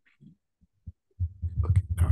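Near silence for about a second, then a low, steady throbbing hum sets in, with a man saying 'okay' over it.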